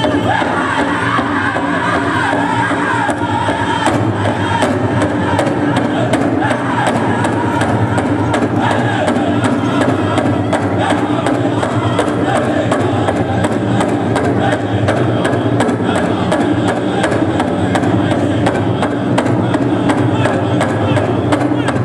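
Powwow drum group singing a buckskin contest song in chorus over a big drum beaten in a steady, even rhythm, with the murmur of a crowd underneath.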